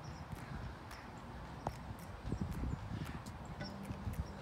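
Faint uneven low rumble of wind on the microphone, with a few soft knocks.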